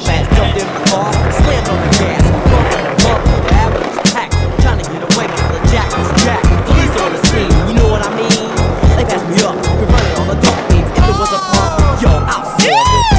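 Skateboard sounds, wheels rolling and board clacks, mixed with music that has a heavy, steady beat.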